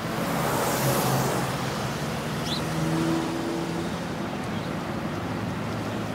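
Road traffic noise: a car passing by, rising over the first second into a steady rush.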